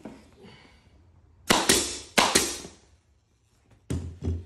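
Pneumatic upholstery staple gun firing four times in two quick pairs, about a second and a half in. Each shot is sharp, with a short fading tail, as it drives staples through the cover into the seat's plastic base.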